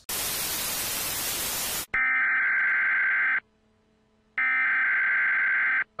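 Television static hiss for about two seconds, then two long steady electronic beeps, each about a second and a half long, with a second of silence between them.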